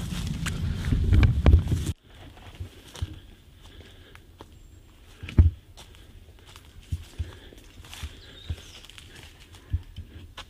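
A loud low rumble for about two seconds that cuts off suddenly, then footsteps on the dry forest floor through scrub and leaf litter: scattered, uneven thuds and crackles.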